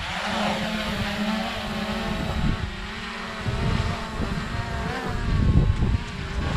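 Small folding quadcopter drone's propellers spinning up and lifting it off, a steady buzzing whine of several stacked tones over a hiss. The pitch bends a little about five seconds in as it climbs and hovers.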